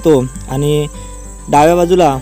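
A man speaking, in short phrases with gaps, over a faint steady high chirring of crickets.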